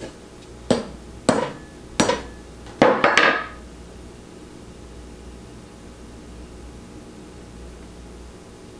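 Small hammer driving a nail into the sole of a safety work shoe resting on a wooden table: about six sharp strikes over some three seconds, the last three coming quickly and ringing.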